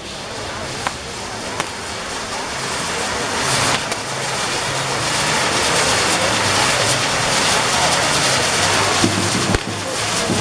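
Fireworks castle tower burning, its spark fountains and spinning wheels giving a steady, dense hissing crackle that grows louder over the first few seconds. A few sharp pops come in the first two seconds.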